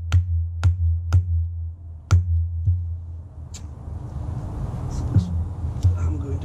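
Claw hammer striking the plastic cap on a fertilizer spike, driving it into lawn soil: sharp blows about two a second over a steady low hum, stopping about three seconds in. After that come faint handling clicks and rustling.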